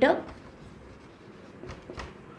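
Marker pen writing on a whiteboard: faint strokes, a little louder near the end.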